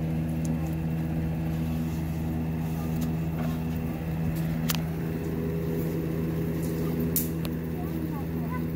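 A steady low mechanical hum, level throughout, with a few faint clicks about halfway through and near the end.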